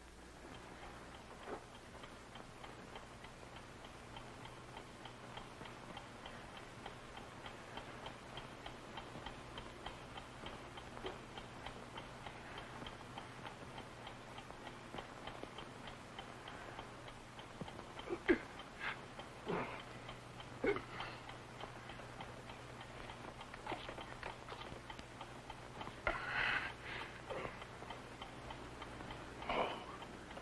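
Steady, even ticking of a film time bomb counting down, over a low steady hum. A few louder short sounds break in about two-thirds of the way through and again near the end.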